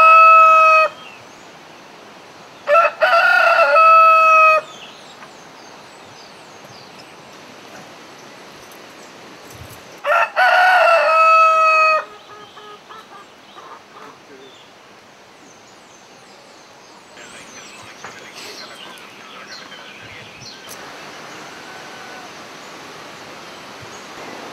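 Rooster crowing three times: one crow already under way as it begins and ending a moment later, then two more, about three and about ten seconds in, each lasting about two seconds. Faint bird chirps and a steady hiss fill the gaps.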